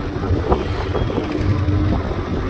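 A vehicle running with a steady low rumble. About a second in, a short steady tone sounds for under a second.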